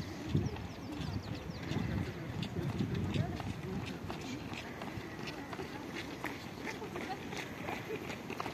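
Footsteps of several joggers on an asphalt path, an irregular patter of footfalls, with voices talking alongside.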